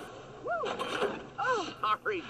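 A voice making two short sounds without clear words, each rising and falling in pitch, about a second apart.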